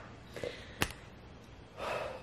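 A woman's breathy gasps and sniffs while overcome with emotion, with a single sharp click just under a second in and a breathy intake of breath near the end.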